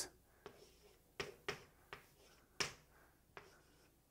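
Chalk writing on a blackboard: about six sharp taps and short scratches, spaced irregularly, as characters are chalked on the board.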